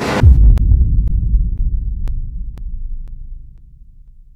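Edited transition sound effect: a short burst of noise, then a deep low rumble that slowly fades away, with faint ticks about every half second.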